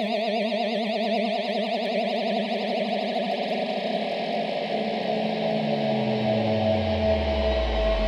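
Held electronic synthesizer chord in 15-tone equal temperament, wobbling with a fast vibrato that settles into a steady tone about halfway through. In the last few seconds a low bass note slides steadily downward underneath it.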